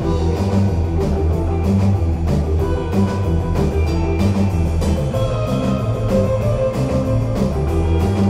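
Live rock band playing an instrumental passage: two electric guitars, an electric bass and a drum kit, with the drums keeping a steady beat under a continuous bass line.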